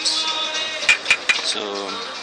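Tennis racket frames clicking and clinking against each other as several Tecnifibre rackets are handled and laid on a racket bag, with three quick sharp knocks in the middle.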